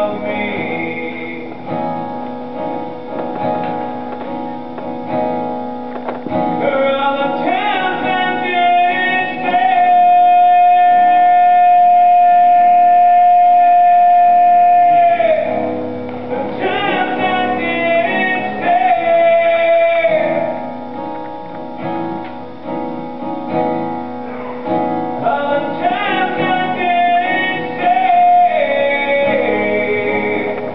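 A man singing to his own acoustic guitar accompaniment, with one long held note of about five seconds near the middle and shorter held notes later.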